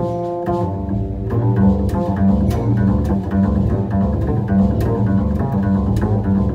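Live jazz piano and upright double bass: the bass plucks a repeating low line under grand piano chords and runs, in a piece written on the border of traditional jazz and Armenian folk music. The bass line drops back for about a second at the start, leaving the piano more exposed.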